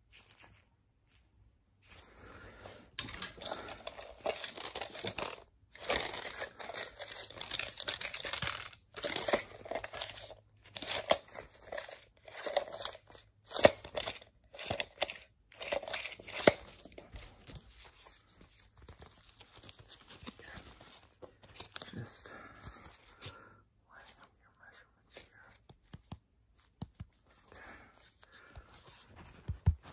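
Close-up handling noises from black-gloved hands working objects near the microphone: a quick run of rustling, tearing and crinkling strokes, dense and loud in the first half and softer and more scattered later.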